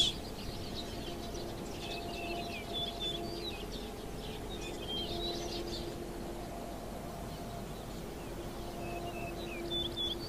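Small birds chirping in three short spells of quick high calls, over a steady low hum.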